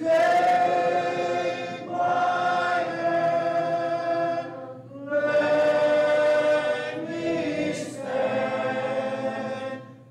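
A church congregation singing a hymn a cappella, many voices together following a song leader, in held phrases of two to three seconds with brief breaths between them.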